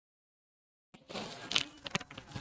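Dead silence for the first half, then from about a second in a soft rustling of cotton saree fabric being handled.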